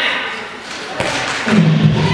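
Voices echoing in a sports hall, a single sharp thud about a second in, then music with a low steady pulse starting near the end.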